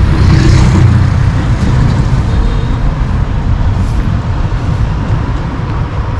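City road traffic: a loud, steady rumble of passing cars and motor vehicles, with a brief hiss about half a second in.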